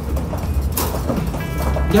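Large papatla leaves wrapped around a tamal rustle briefly as they are pressed and bound with wire, over a low steady hum.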